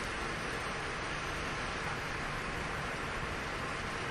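Steady, even hiss of background noise with nothing else standing out.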